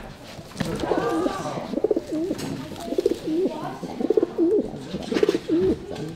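Racing pigeons cooing in a wicker basket: a run of low, wavering coos, about one a second.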